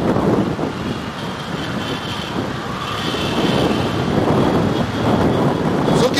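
Steady low rumble of wind buffeting an outdoor microphone, with no speech over it.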